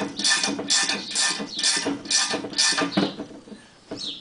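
Ratchet spanner turning the nut on a length of threaded studding, a short rasp of clicks about twice a second, drawing the swinging arm bearing outer races into their housing. The rasps stop about three seconds in.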